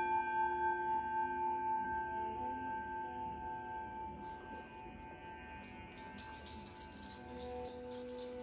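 A singing bowl struck once, ringing with several steady overtones that slowly fade away; near the end a lower steady tone comes in.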